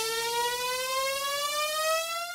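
A siren-like electronic tone slowly rising in pitch, a build-up effect in a tribal dance track, over a faint high hiss.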